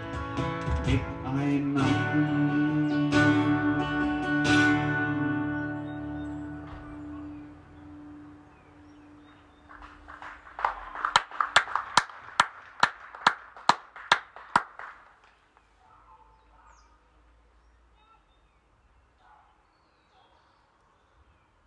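Acoustic guitar strummed through the closing chords of a song, the last chord ringing out and fading over several seconds. A few seconds later comes a short burst of hand clapping, about a dozen sharp claps at roughly three a second.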